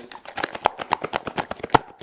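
A small wrapped gift box picked up and shaken in the hand, its contents giving a quick, irregular run of light clicks and rattles, the sharpest near the end.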